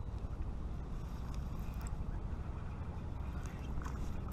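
Wind rumbling steadily on an action camera's microphone, with a few faint clicks.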